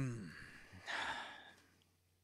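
A man sighs: a short voiced "ahh" falling in pitch, followed about a second in by a breathy exhale that fades away.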